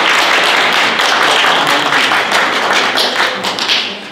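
Audience applause: many people clapping hands together in a dense, steady patter that dies away at the very end.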